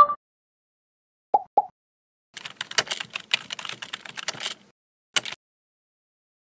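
Sound effects of an animated logo sting. There is a short two-tone blip, then two quick pitched pops just over a second in, then about two seconds of rapid clicking like typing on a computer keyboard. It ends with one last sharp click near the end.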